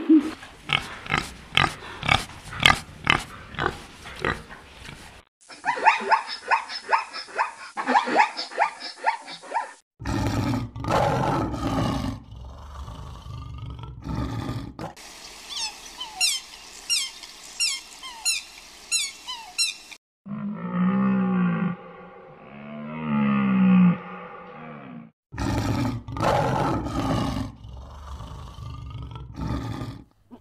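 Several different animal recordings cut one after another. They include rapid clicking and chirping calls early on, many short high peeps in the middle where a Canada goose and her goslings are shown, low honking calls, and loud coarse calls near the end.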